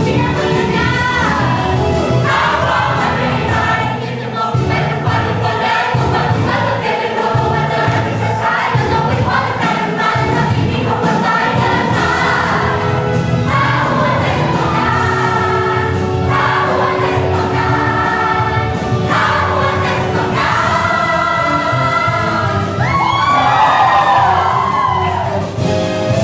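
A stage-musical cast singing an ensemble number together over musical accompaniment. Near the end a single voice sings a swooping run.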